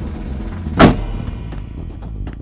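A Jeep Wrangler door slammed shut once, about a second in, over background music with a steady low beat.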